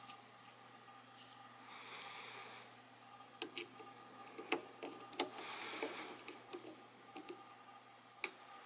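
A small screw being driven back into the frequency-standard adjustment cover on a Racal-Dana 1992 frequency counter's rear panel with a screwdriver. It gives soft scraping and several light metal clicks over a steady low hum.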